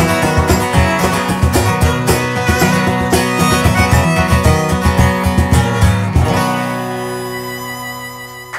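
Acoustic guitar strummed hard together with a violin in an instrumental ending, stopping on a final chord about six seconds in; the chord and a held violin note then ring out and fade.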